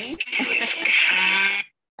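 Soundtrack of a video clip played over a video call: a voice with music under it and a harsh hiss, cutting off shortly before the end.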